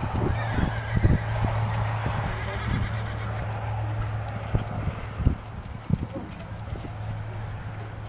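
Hoofbeats of a horse galloping on soft arena dirt: irregular dull thuds, over a steady low hum.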